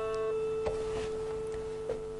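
A single plucked string note ringing on steadily and slowly fading. Two faint light plucks sound under it, about two-thirds of a second in and again near the end.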